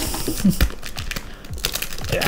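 Clear packing tape being picked at and pulled off a plastic storage tub by hand, giving small irregular clicks and taps with a few soft knocks on the plastic.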